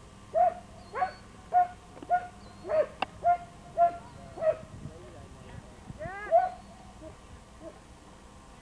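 A dog barking in a run of short, sharp barks, about two a second for the first four seconds or so. After a pause comes one louder bark, then a couple of fainter ones.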